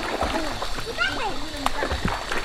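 Water splashing as a child wades through shallow pool water and steps out.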